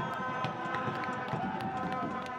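Voices shouting and crowd noise at a football ground as a goal is celebrated, with steady held tones and scattered sharp taps.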